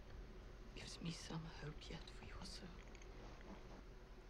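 Hushed, whispery speech for about two seconds, starting about a second in.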